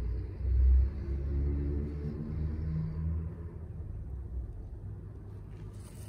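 A low, uneven rumble, loudest about half a second in and slowly fading, with a faint hum running through it for the first few seconds.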